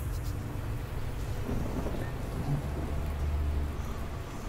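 Thunderstorm sound in a horror film's soundtrack: steady rain with low rumbling thunder, the rumble swelling about two and a half seconds in and easing off near the end.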